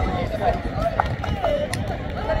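Several men's voices shouting and talking over one another in celebration, with a low rumble of wind on the microphone.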